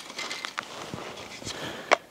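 Light scuffing and a few small clicks as a shooter handles his gear, picking an empty magazine up off the ground and bringing his pistol to a belt holster. The sharpest click comes near the end.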